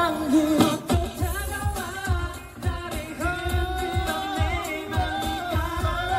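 Live K-pop performance: a male singer sings into a handheld microphone over a pop backing track with a heavy beat, holding one long note in the middle.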